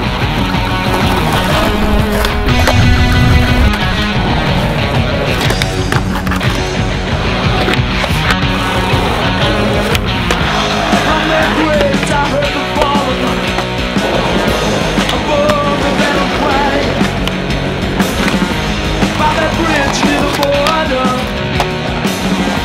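Rock music with electric guitars, over skateboard wheels rolling on pavement and the sharp clacks of boards being popped and landed.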